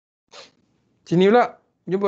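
Speech only: a short faint hiss, then a spoken word about a second in, and more talking starting near the end.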